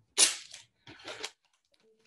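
Adhesive tape being torn by hand: a sharp rip about a quarter second in, the loudest sound, then a second, softer rip around a second in.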